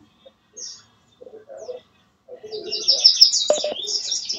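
Birds chirping, heard over an online video call, with a quick run of repeated high chirps in the second half.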